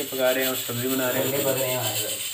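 A person talking over the rub of a rolling pin on a board as chapati dough is rolled out.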